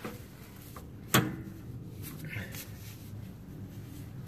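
Steel brake spring tool working against a drum brake's shoe return springs and hardware: a sharp click about a second in, then faint scraping while the spring resists coming off.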